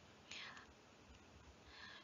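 Near silence with two faint breaths from the narrator: one about a third of a second in, another just before the end.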